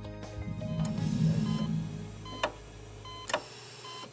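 Closing background music: held tones with a low swell in the first half, then sharp ticks roughly a second apart.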